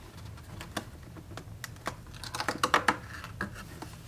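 Fingers working open a cardboard advent calendar door and reaching in for the wrapped sweet inside: a run of small, sharp clicks and crackles, densest and loudest a little past halfway.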